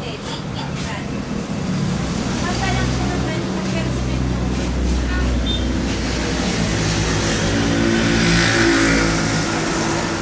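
A motor vehicle's engine running steadily, with voices in the background. The noise swells to its loudest about eight to nine seconds in.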